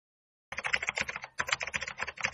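Computer keyboard typing sound effect: a rapid run of key clicks that starts about half a second in, with a short break partway through.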